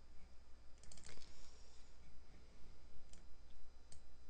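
Computer keyboard and mouse clicks: a quick run of taps about a second in, then a few single clicks near the end, over a steady low hum.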